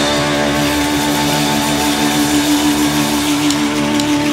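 Live blues band playing an instrumental passage led by electric guitar, with one long held note sustained over the band.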